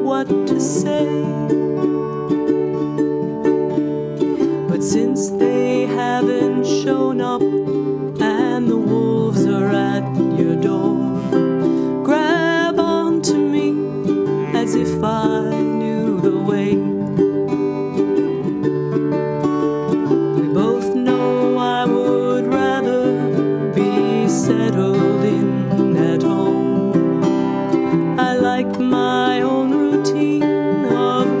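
A woman singing a song while strumming chords on a ukulele.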